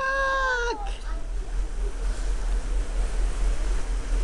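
A short, high-pitched wavering cry, under a second long, at the start. After it comes steady wind noise with a low rumble on the microphone.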